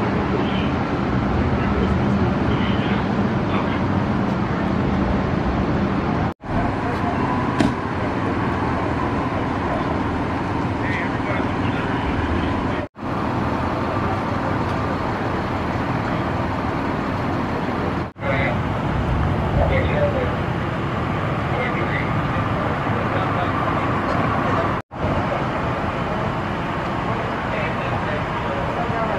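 Steady street rumble of idling vehicle engines and traffic, with indistinct voices of people around. The sound drops out for a moment four times, at cuts between shots.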